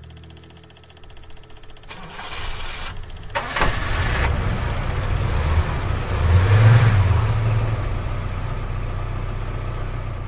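The last held note of the music dies away, then a motor vehicle engine starts with a sharp clunk about three seconds in, revs up to a peak around seven seconds and settles into a steady run.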